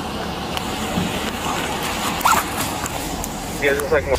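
Steady hiss and rumble of a police body-worn camera's microphone outdoors, with faint indistinct sounds and a brief faint chirp a little past halfway.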